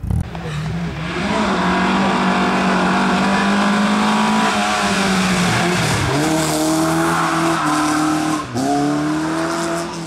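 A rally car engine revving hard at high revs. Its pitch drops sharply and climbs again twice, about six and about eight and a half seconds in.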